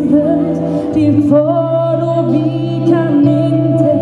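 Live band playing a slow ballad, a woman singing lead with long held notes over sustained guitar chords and a low steady accompaniment.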